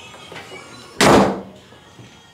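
A panelled interior door slammed shut: one loud bang about a second in that dies away within half a second.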